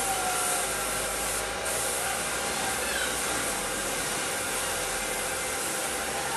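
Air-fed gravity spray gun hissing steadily as it sprays car paint onto a body panel.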